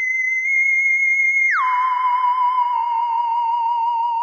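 Electronic theremin-like tone for a logo sting: a high steady note that slides down about a second and a half in to a lower note, held with a slight wobble.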